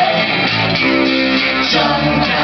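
Live band playing an instrumental passage: acoustic guitar strummed over electric bass guitar, with no singing, and a chord held for about a second near the middle.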